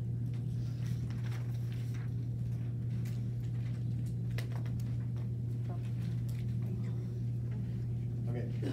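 A steady low room hum, with faint scratches and squeaks of a marker writing on a whiteboard.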